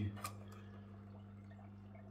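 A low, steady hum with a faint click shortly after the start.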